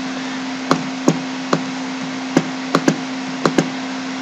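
Computer mouse button clicking about eight times, sharp short clicks with a couple of quick pairs, as dialog tabs and icons are clicked through. Under them a steady low hum and hiss.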